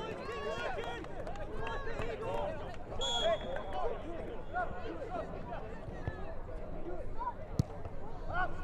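Many indistinct voices of players and spectators calling and chatting across an open football pitch. About three seconds in comes a short, shrill blast of a referee's whistle, and near the end a single sharp knock.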